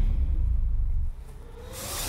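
A deep rumble that starts suddenly and drops away about a second in. It is followed near the end by a rising whoosh.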